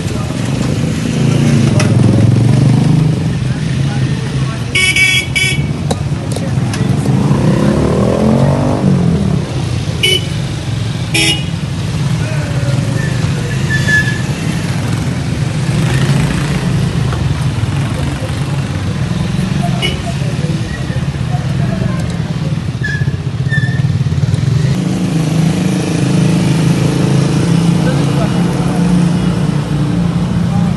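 Motorcycle engines running in street traffic, one rising in pitch as it revs around eight seconds in, with short horn toots about five and ten seconds in.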